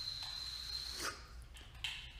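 A faint, steady high-pitched tone that stops about a second in, followed by a sharp click near the end.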